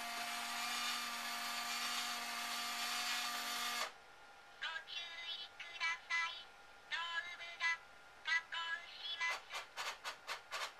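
Robot beer server (Hon-Nama Robocco) running a steady mechanical whir with a low hum for about four seconds as its head unit lowers. Its synthetic voice then speaks several short phrases, and fast regular clicking starts near the end.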